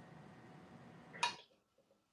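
Ground coffee being tipped from a dosing cup into an espresso portafilter: a faint, steady rustling pour, with a brief louder sound about a second in as it ends.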